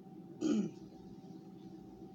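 A woman clears her throat once, briefly, about half a second in, while eating dry powdered starch.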